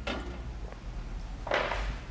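Hand tool handling on a coilover shock's top mount: a wrench clicks on the bolt, then a short metal scrape about one and a half seconds in as it comes off.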